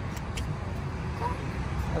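Steady low rumble of road traffic, with two faint clicks near the start.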